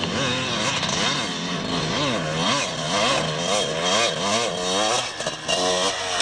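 Motocross dirt bike engine revving up and down about twice a second as the rider goes through the whoops, with a short drop in the engine note near the end.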